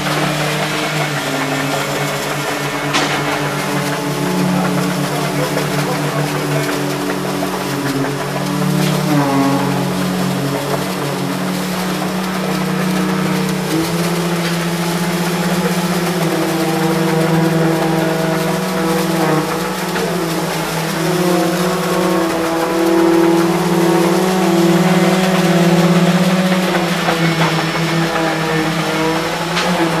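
Heavy diesel engines of construction machinery running steadily, the engine note shifting a little in pitch now and then, with a few brief sharp knocks.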